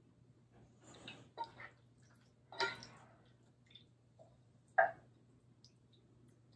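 A large serving spoon scooping and spreading a moist ground beef mixture onto a casserole, giving a few short, separate scrapes, taps and soft squishes.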